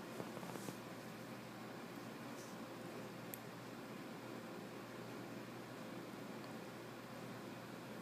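Faint, steady room hiss with a few soft rustles in the first second and a single small click a little over three seconds in.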